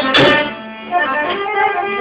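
Music playing, dipping in loudness for about half a second near the start, then going on more softly.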